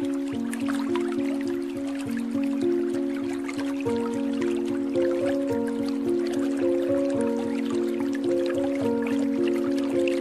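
Slow, soft relaxation music of held notes that step gently from one to the next, over a steady patter of small dripping water sounds.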